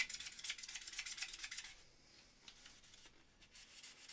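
Melamine foam eraser scrubbing a small hard plastic part with quick scratchy rubbing strokes that stop a little under halfway through. This is followed by near silence with a few faint ticks of handling.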